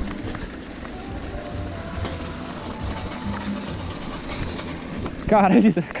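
Bicycle rolling along a dirt road: a steady rushing of wind and tyre noise over the rider's microphone.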